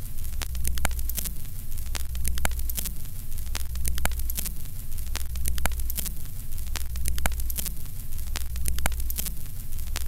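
Old film-projector countdown sound effect: crackling static and irregular clicks over a steady low hum, with a whirring sweep that repeats about once a second.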